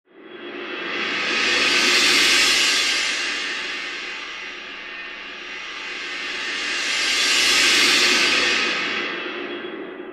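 Cymbal-like shimmering swells from a title-intro sound effect: a long swell rising and fading twice, peaking about two seconds in and again near eight seconds.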